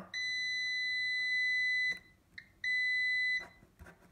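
Metrix MTX 3292 multimeter's continuity beeper giving a steady high beep for about two seconds, a short blip, then a second beep of under a second. The beeps come as the spacebar and Y contacts on the keyboard membrane are pressed together and close the circuit between connector pins 16 and 25, a sign of a faulty track on that branch of the membrane.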